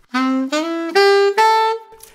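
Selmer Mark VI alto saxophone playing a short rising phrase in concert C major: C, a quick E-flat grace note into E, then G and a held A that fades near the end.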